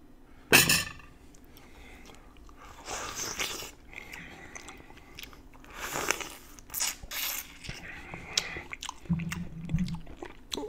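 Close-up eating sounds: a sharp, loud bite into a halved red grapefruit about half a second in, followed by several bouts of wet chewing of the juicy flesh.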